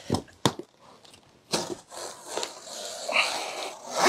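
A large cardboard shipping box being handled and pulled open, with two sharp knocks just after the start, then rustling, scraping cardboard.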